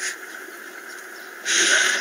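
A person taking a long, noisy sniff through the nose about one and a half seconds in, after a quiet stretch of low hiss, heard through a TV speaker.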